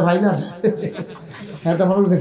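Speech: a man preaching in Bengali into a microphone, lively in delivery, with a quieter stretch in the middle.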